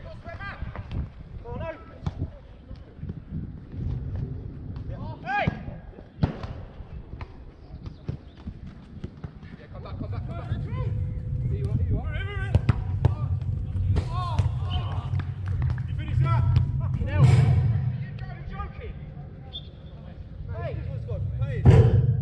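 Five-a-side football players shouting and calling to each other across the pitch, with the ball being kicked every so often. A low rumbling noise runs underneath through the second half.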